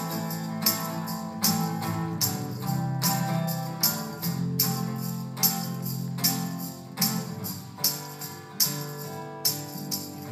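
Instrumental break of a small acoustic folk band: acoustic guitar strumming and fiddle holding a melody, with tambourine shakes landing on the beat about once or twice a second.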